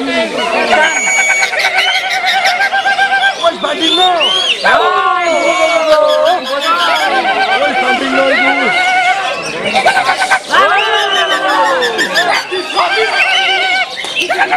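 Several caged cucak hijau (green leafbirds) singing at once in competition: fast, varied phrases and rapidly repeated trilled notes overlap in a continuous dense chorus.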